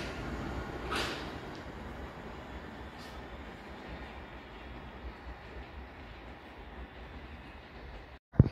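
London Underground S Stock train pulling away from the platform, its running noise fading steadily as it draws off into the distance, with a brief louder swell about a second in.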